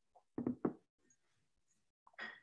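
Two quick knocks about a quarter of a second apart, a little under halfway in.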